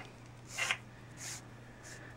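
Nylon paracord rubbing and sliding as it is pulled through a loop by hand. Two faint rustles come about half a second and just over a second in.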